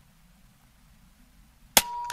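A single sharp shot from an Air Venturi Avenger Bullpup .22 regulated PCP air rifle, near the end, followed by a brief ringing tone.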